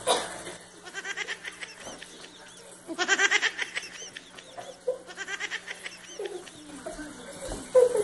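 Child giggling in three short bouts of rapid, breathy pulses, the middle bout loudest, after a brief loud sound at the very start.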